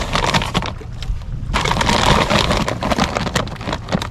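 A plastic feed bag rustling and range cubes rattling as a hand digs in and scoops out a handful, in irregular crackles, over a steady low rumble.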